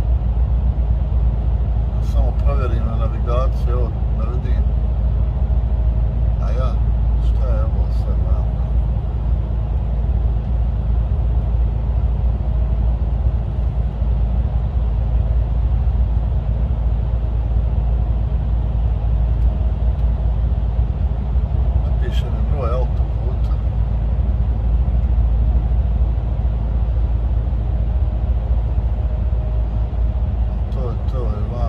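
Steady low rumble of a truck's engine and tyres heard from inside the cab while driving through a road tunnel. A man's voice murmurs briefly a couple of seconds in, again around seven seconds in, and once more about twenty-two seconds in.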